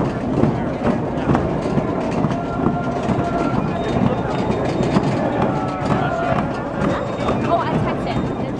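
A crowd outdoors: many overlapping voices talking and calling, with scattered knocks and a few short held calls.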